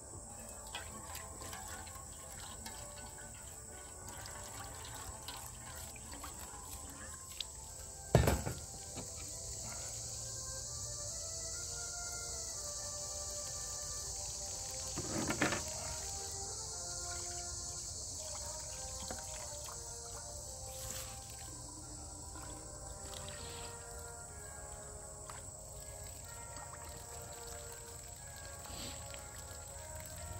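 Soft background music over water running from a plastic water jug's spigot into a pan as dishes are rinsed, with a steady high insect drone. Two sharp knocks about eight and fifteen seconds in.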